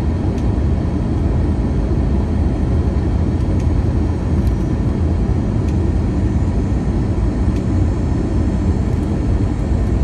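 Steady low rumble of cabin noise inside an Airbus A321 descending on approach: engine and airflow noise, with a faint steady hum over it.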